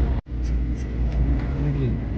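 Low steady rumble of a passenger train carriage running, heard from inside the car, after a brief dropout just after the start; a voice is faintly heard in the second half.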